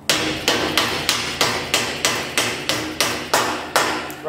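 Red soft-faced hammer tapping a nylon torsion bar bush into a sprint car chassis tube: about a dozen light, even blows, roughly three a second, until the bush is seated.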